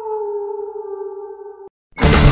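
Eerie synthesized intro sound effect: one long sustained tone with overtones, sliding slowly down in pitch. It cuts off abruptly near the end, leaving a brief silence before loud rock music kicks in.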